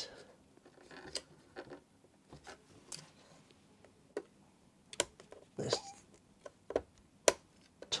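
Faint, scattered clicks and taps of a small pry tool against the plastic latch of a laptop keyboard ribbon-cable connector, as the latch is worked back to free the cable.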